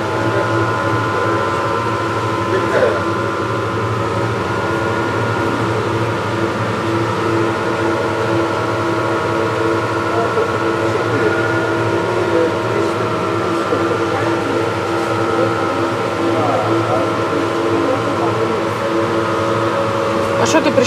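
Steady multi-tone hum of supermarket refrigerated display cases and ventilation, unchanging throughout, with faint voices of other shoppers now and then.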